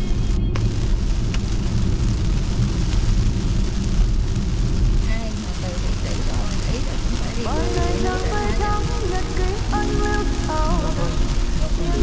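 Heavy rain on a car's windshield and tyres hissing on a wet motorway, heard from inside the cabin as a steady loud wash. Partway through, a melody of music comes in over it.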